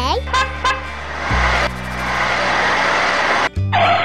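Sound effect of a truck engine running with a low rumble, then a horn honking from near the end, laid over music.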